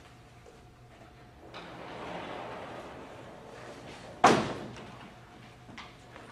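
A chalkboard panel sliding along its track for about two and a half seconds, then a single loud bang with a short ringing tail as it hits its stop.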